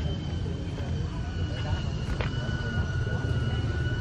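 A steady low rumble with a thin, steady high whine held over it, and a faint click about two seconds in.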